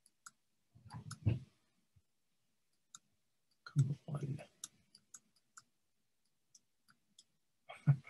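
A dozen or so irregular clicks of a computer mouse, struggling to advance a presentation slide that won't move, with brief low muttering about one and four seconds in.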